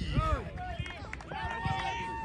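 Spectators and young players shouting over one another, with one voice holding a long, level call from a little past halfway.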